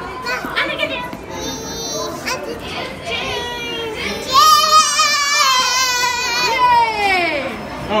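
A toddler's long, high-pitched squeal starting about halfway through, wavering and then falling in pitch at the end, after a few seconds of small children's babble.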